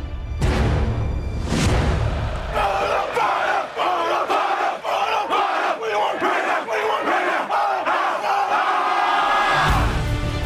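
A team of football players performing a haka: a loud group war chant shouted in unison, with regular rhythmic accents. It follows a brief musical whoosh at the start, and music comes back in just at the end.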